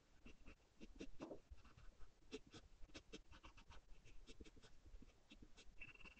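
Graphite pencil scratching on paper in short shading strokes, two or three a second, picked up close by an ASMR microphone.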